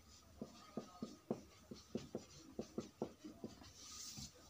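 Felt-tip marker writing on a whiteboard: a faint, quick series of short taps and scratching strokes as letters are written, stopping shortly before the hand lifts away.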